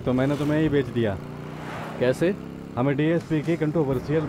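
Men's Hindi film dialogue over a motorcycle engine running steadily underneath. The engine is heard on its own in a pause of about a second, starting just after the first second.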